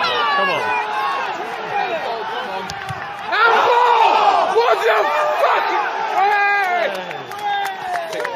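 Football crowd in the away end shouting together, many voices at once, swelling into a louder outcry about three and a half seconds in.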